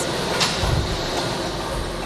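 Air-mix lottery ball machines running: a steady rush of blower air with the plastic balls tumbling and rattling inside the acrylic chambers, and a single sharp click about half a second in.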